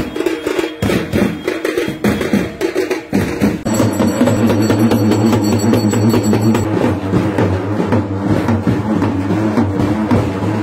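Procession drumming on hand-played frame and barrel drums, a dense run of strikes. About three and a half seconds in, a steady low drone comes in and carries on under the drumming.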